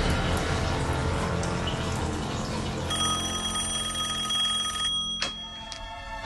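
Tense music, then about three seconds in a telephone's bell rings with a fast rattle for about two seconds and stops abruptly, followed by a single click as the handset is picked up.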